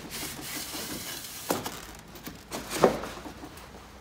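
Short foam offcut pieces being handled and set into the plastic rails of a vertical insulated-concrete-form wall: a light rubbing scrape and two dull knocks, one about a second and a half in and one about three seconds in.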